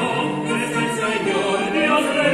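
Soprano and tenor singing with a string quartet of violins, viola and cello, the voices and bowed strings holding notes that change about every half second.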